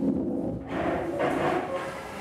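A class of children and their teacher breathing slowly and deeply together during a guided breathing count, a soft, airy sound with no words.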